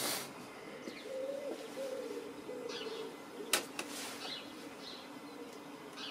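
Breville espresso machine running while it makes a coffee: a low hum that wavers in pitch, then settles into a steadier tone, with a sharp click about three and a half seconds in.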